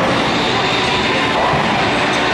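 Loud, steady din of a busy bowling alley and arcade: a dense, even wash of noise with no single sound standing out.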